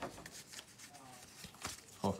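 Faint rustling of Pokémon trading cards being handled, with a light tap or click about three-quarters of the way through.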